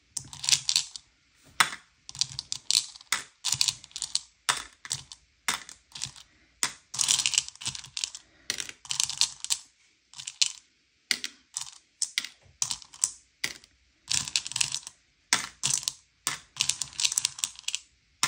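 Candy-coated M&M's chocolates clicking and rattling against each other and the bowl as a hand rummages through them and sorts them out. The clicks come in quick, irregular clusters with short pauses between.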